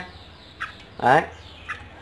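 Two brief, faint chirps from a caged red-whiskered bulbul, one about half a second in and one near the end.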